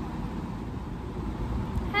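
Steady low background rumble with no speech, the same noise that runs under the talk either side.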